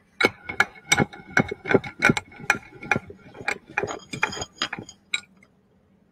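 Steel bench vice being wound open and shut by its sliding handle bar: a run of metallic clacks with a light ring, about two or three a second, that stops about five seconds in.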